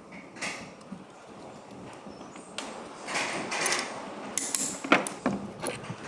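Metal parts of a Honda 110cc engine being handled and fitted on its open crankcase: scraping and rubbing of metal on metal, then a sharp metallic click about five seconds in.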